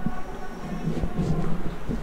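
Wind buffeting the camera microphone: an irregular low rumble in gusts.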